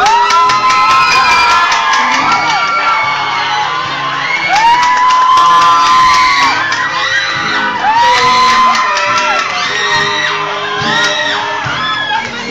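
Live acoustic-guitar band with a singer on a microphone, as long, high voices whoop and cheer over the music again and again.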